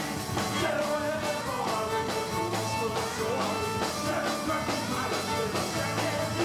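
Live Celtic rock band playing: a fiddle carrying the tune over drum kit and bodhrán with a steady beat.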